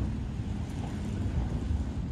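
Low, uneven rumble of wind buffeting the microphone outdoors.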